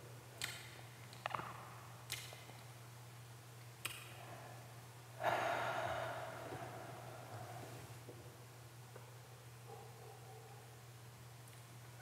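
Quiet whisky-tasting breath sounds: a few short breath and mouth noises in the first four seconds, then a long exhaled sigh about five seconds in that fades away, as a taster breathes out after a sip of Scotch. A low steady hum runs underneath.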